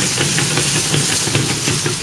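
A small battle robot's servo motors whirring steadily with a fast, irregular rattle and a constant hiss, picked up close by a camera riding on the robot as it moves.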